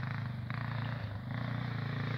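Honda TRX400EX sport quad's single-cylinder four-stroke engine running steadily at moderate revs as it rides, dipping slightly and picking back up about a second in.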